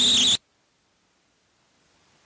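A high, squeaky pitched sound with a rising whine cuts off abruptly less than half a second in, leaving near silence: the audio drops out.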